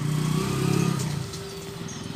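Commuter motorcycle pulling away and riding off. Its engine is loudest in the first second and fades as it goes.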